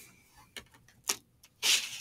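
A few soft taps and a short rustle from a sheet of honeycomb beeswax being picked up and laid back down on a wooden table, the rustle louder near the end.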